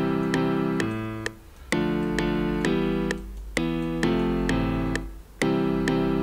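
Looping piano chord pattern in FL Studio, struck about twice a second, played through a parametric EQ whose bands are being dragged, so its tone keeps shifting. Three brief dips in level come about 1, 3 and 5 seconds in.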